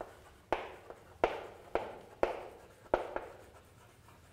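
Chalk writing on a blackboard: a series of sharp taps as the chalk strikes the board, each trailing off into a short scratchy stroke, about five strokes in the first three seconds and quieter near the end.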